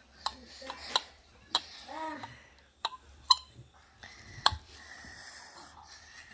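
A kitchen knife clicking against a plate as a dragon fruit is cut into cubes: several short, sharp clicks spread out, the loudest about four and a half seconds in, with brief murmured voice sounds between them.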